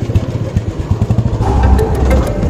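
Motorcycle engine idling with a steady, even low pulsing. Background music comes in over it about one and a half seconds in.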